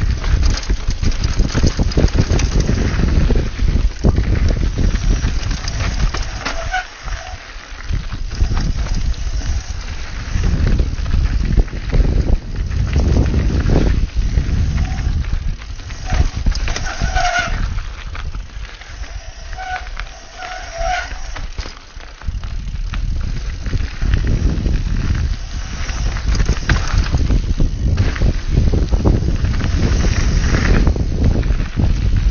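Mountain bike descending a dirt trail: wind buffeting the camera's microphone, tyre noise and the bike rattling and knocking over bumps. A few short honking tones come in about seven seconds in and again past the middle.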